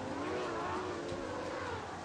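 A motor humming, its pitch bending gently up and down.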